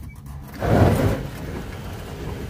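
All-electric John Deere Gator pulling away at full speed, its motor controller giving full current just after power was cycled, with a loud burst of noise about half a second in, then steady driving noise.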